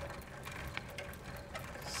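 Bicycle freewheel clicking in a fast run of ticks as the bicycle is wheeled along on foot.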